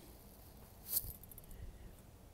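Small pieces of jewelry being handled: one brief light click about a second in, then a few faint ticks, against an otherwise quiet background.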